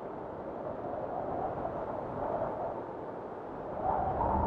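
A steady rushing noise that swells slightly near the end.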